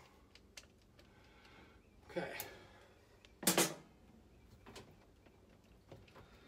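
Screwdriver working at a circuit breaker's wire terminals in an open breaker panel: scattered faint metallic clicks and ticks, with one louder, longer scrape about three and a half seconds in.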